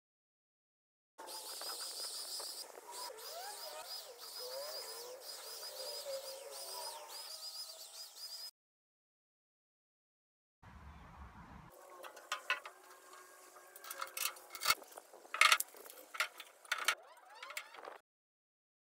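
Outdoor ambience with birds calling: a high chirp repeated many times over lower gliding calls. After a silent gap, a run of sharp clicks and knocks, loudest a few seconds before the end.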